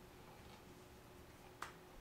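Near silence: room tone, broken by one sharp click about one and a half seconds in.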